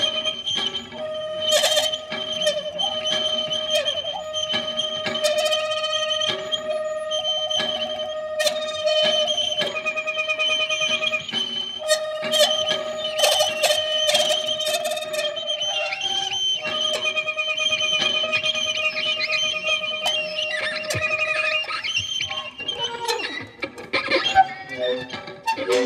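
Saxophone and violin playing a free improvised duet: long held notes broken by short gaps, over scattered clicks and taps. The music turns busier and more broken up near the end.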